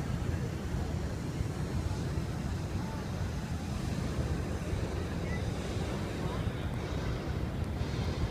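Wind buffeting the microphone in a steady low rumble, over the indistinct chatter of a large outdoor crowd.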